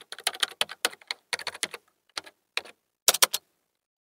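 Computer keyboard typing: quick bursts of sharp key clicks with short pauses between them, stopping about three and a half seconds in.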